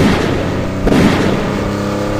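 Battle sound effects: loud explosion booms over a continuous rumble, with a sudden blast at the start and another just under a second in.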